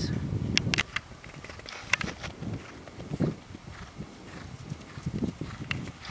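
Hoofbeats of a barefoot Appaloosa–Thoroughbred cross mare moving on a dirt arena under a rider: irregular dull thuds with a few sharper clicks.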